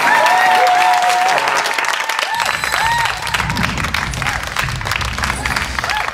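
Studio audience applauding and cheering over the show's closing music, with a heavier bass beat coming in about two seconds in.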